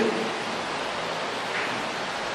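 Steady, even hiss of background noise, with no other sound standing out.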